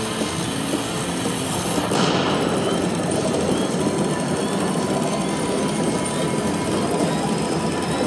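Lock It Link Eureka slot machine's sound effect: a loud, dense, steady rattling rumble that plays while the dynamite symbol turns into a gold nugget and its value climbs.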